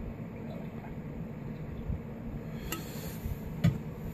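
Beer being poured quietly from a glass cylinder into a small sample glass. Near the end there are two short glass clinks, the second louder, as the glassware knocks together or is set down.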